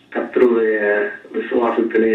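Speech only: a man preaching in Tamil in short phrases, with a thin, radio-like sound.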